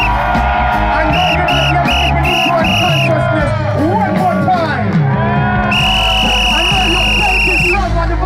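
Live reggae music with a steady, heavy bass line. Over it a high, shrill tone sounds in five short toots about a second in, then one long blast near the end.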